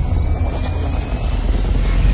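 Cinematic logo-reveal intro sound effect: a loud, deep, steady rumble with a noisy hiss over it and a faint thin whine drifting slightly upward.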